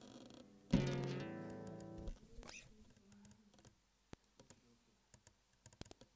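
Acoustic guitar strummed once about a second in, the chord ringing out and fading over a second or so. Scattered faint clicks and handling noises follow.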